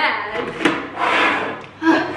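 A person's voice exclaiming and breathy laughing, with one light knock about half a second in.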